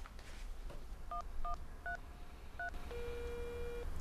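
Mobile phone keypad beeping as a number is dialled: four short two-tone key presses, then a steady tone about a second long near the end.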